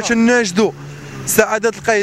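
A man speaking in short phrases, with a brief pause in the middle.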